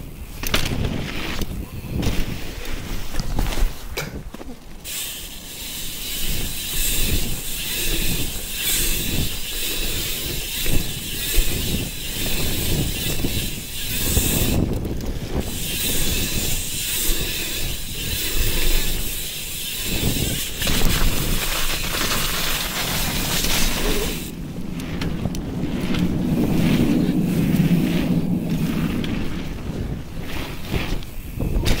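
Wind buffeting an action camera's microphone as a bicycle rolls over a wet, slushy pump track, with tyre noise and knocks from the bike over the bumps. The noise changes abruptly several times.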